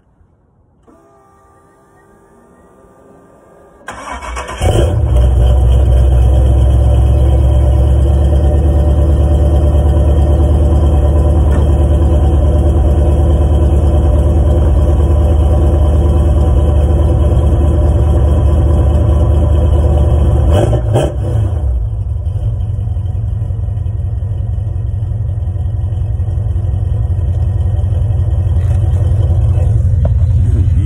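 Camaro engine cold-starting through turned-down exhaust tips: it catches about four seconds in and runs loud at a fast idle. About 21 seconds in the idle steps down a little, then slowly builds again. The owner had to prime the fuel to get it started after it sat for four days.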